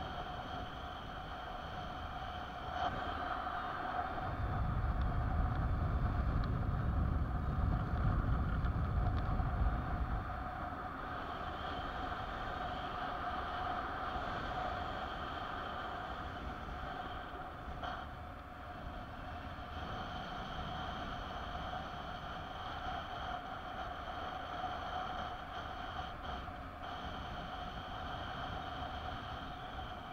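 Airflow rushing over the microphone of a camera carried on a mini-wing paraglider in flight, with a steady whistle under it. A louder low buffeting from gusts comes from about four to ten seconds in.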